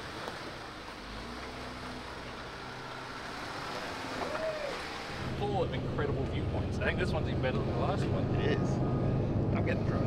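Jeep engines running at a low idle, with faint voices. About five seconds in, a closer idling engine and people talking get louder.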